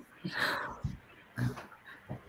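Soft, breathy laughter over a video call, with a couple of short, faint low sounds in between.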